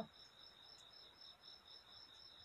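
Near silence: room tone with a faint, steady high-pitched whine.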